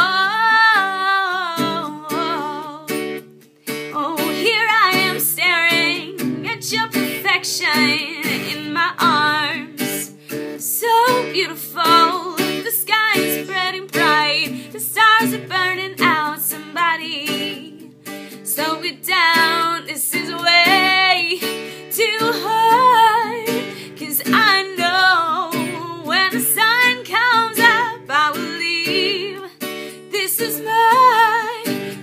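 A woman singing while strumming an acoustic guitar, with a brief pause in the voice about three and a half seconds in.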